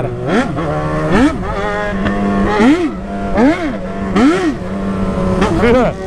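Yamaha XJ6 inline-four engine revved again and again in quick throttle blips while riding, each one rising and falling in pitch, about once a second, over the bike's steady running note.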